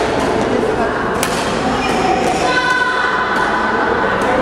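Badminton rackets striking a shuttlecock during a rally: a few sharp hits, the clearest about a second in. The hits echo in the gym over a steady murmur of voices.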